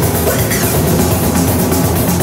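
Live electronic rock music played from a laptop and hand-held MIDI controllers: a dense, loud, steady mix with drums.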